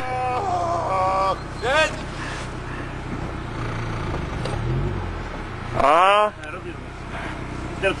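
People shouting and cheering, with one loud rising-and-falling whoop about six seconds in, over a steady low hum.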